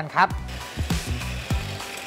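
Electric hand mixer switched on just after the start, running steadily as its beaters whip instant coffee, sugar and hot water in a glass bowl to make whipped coffee cream.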